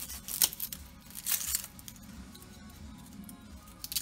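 Dry, papery red onion skin being peeled and torn off with a small paring knife: a few short crackling tears in the first second and a half, then quieter. Faint background music runs underneath.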